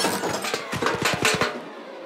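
A quick run of clattering knocks, about eight in under a second, from a cartoon sound effect.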